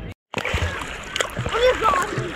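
Sea water splashing around swimmers close to the microphone, starting after a short silent break near the beginning.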